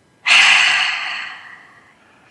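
A woman's deep, cleansing breath out, a breathy rush that starts strongly about a quarter second in and fades away over about a second and a half.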